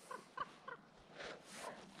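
Faint animal calls: three short calls in quick succession, about a quarter second apart, followed by a soft rustle.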